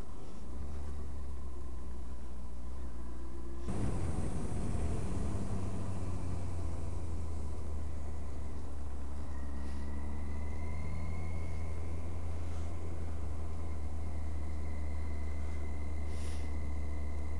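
Kawasaki GTR1400 motorcycle being ridden at road speed: steady wind rumble on the microphone over the inline-four engine's drone. About four seconds in the sound changes abruptly.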